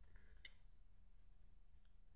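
A single short, sharp click about half a second in, over faint room tone.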